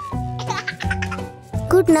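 A baby giggling in short bursts about half a second in, over light children's background music.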